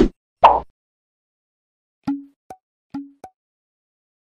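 Cartoon pop and click sound effects from an animated subscribe button: two short loud pops at the start, then two pairs of quick clicks about two and three seconds in, each pair a lower blip followed by a higher tick.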